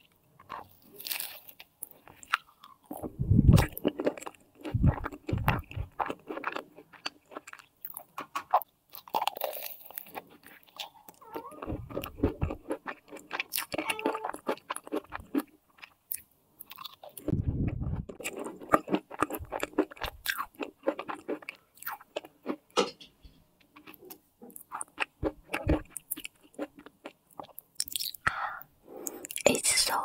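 Close-miked biting and chewing of a craquelin-topped cream puff: crisp crunches of the crumbly topping mixed with soft, wet chewing of the cream-filled choux pastry, in irregular bursts with several heavier bites.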